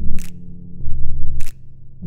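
Instrumental music: low bass notes shifting in pitch, punctuated by two short, sharp percussive hits a little over a second apart.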